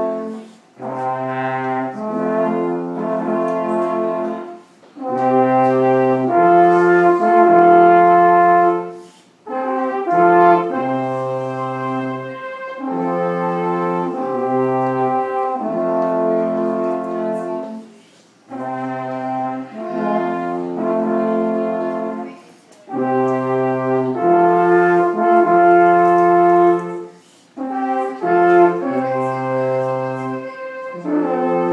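Two alphorns playing a slow tune in harmony: long held notes in phrases of about three to five seconds, each ended by a short break for breath.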